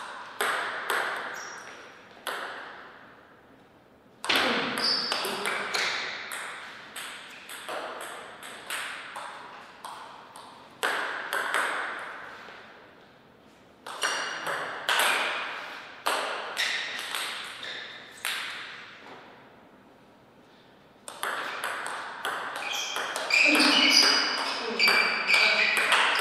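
Table tennis rallies: the celluloid-type ball clicks sharply off the bats and bounces on the table in quick runs of clicks, with short lulls between points.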